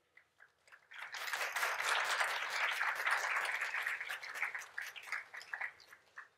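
Audience applauding: a burst of many hands clapping that starts about a second in and gradually thins out toward the end.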